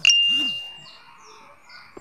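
A single bright ding: a bell-like tone that starts sharply and fades over about a second. Faint, repeated bird chirps sound behind it.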